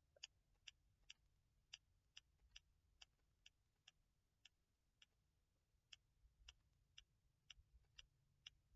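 Faint, sharp clicks at uneven spacing, about two or three a second, over near-silent room tone.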